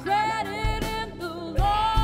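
A live rock band playing with a woman singing lead: long held sung notes over electric bass, guitar and drums, with two kick-drum beats about a second apart.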